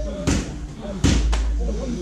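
Muay Thai strikes landing on pads held by a trainer: three sharp smacks, one just after the start and two close together about a second in, the first of these the loudest.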